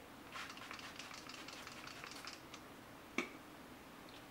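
Faint hissing of a finger-pump makeup setting spray misting onto the face over about two seconds, followed about three seconds in by a single sharp click.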